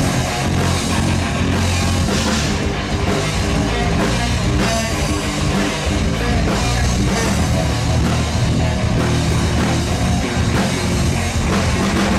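Rock band playing live at full volume: electric guitars and a drum kit driving a steady beat in an instrumental passage, with no singing.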